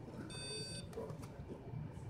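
A single electronic beep, about half a second long, from the Laser 750 therapy laser unit's control panel as the unit is started.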